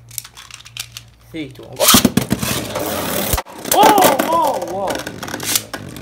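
Beyblade spinning tops launched into a clear plastic Beystadium: a loud rasping whirr starts suddenly about two seconds in and cuts off abruptly with a knock about a second and a half later. It is followed by an excited voice and a few sharp clicks of the tops striking.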